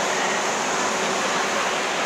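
Steady wash of indistinct crowd chatter and air-handling noise in a large warehouse-store food court, with no single voice standing out.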